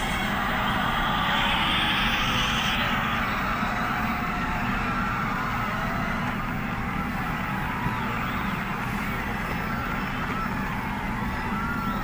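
Seoul Metro Line 4 subway train running, a steady rumble and rush of the ride heard from inside the car. A louder hiss sits over it for the first three seconds.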